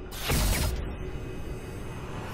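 Sound effect for an animated logo sting: a short, loud whoosh about a quarter second in that sweeps downward in pitch, then a quieter, steady mechanical-sounding bed of sound.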